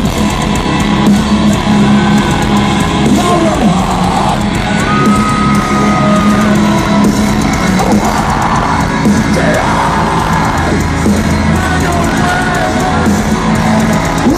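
Live metalcore band playing loud, with heavy guitars, drums and yelled vocals, recorded on a phone from the crowd.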